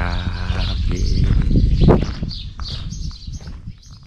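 Wind rumbling on an action camera's microphone, with handling noise as a hand comes over the camera, and birds chirping in the background. The rumble is strongest about two seconds in, then dies down near the end.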